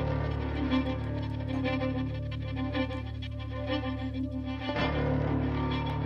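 Instrumental music with steady held tones and a low bass line; no speech.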